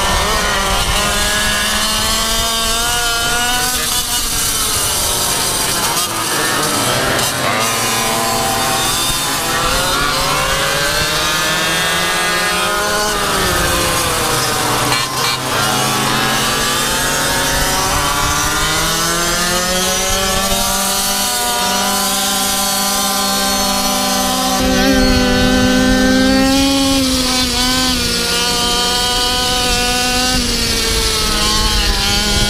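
Small two-stroke engine of a racing GoPed scooter running hard, its pitch rising and falling with the throttle: it drops away twice and climbs back up. Other scooters' engines run close by.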